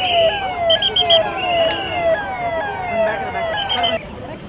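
A vehicle siren sounding in quick falling sweeps, about three a second, with a few short high peeps over it about a second in; it cuts off abruptly at the end.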